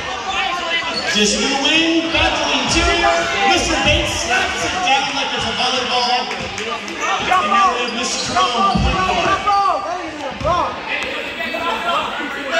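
A basketball bouncing on a hardwood gym floor as it is dribbled during play, a thump every second or so, under the constant chatter of spectators echoing in a large gym.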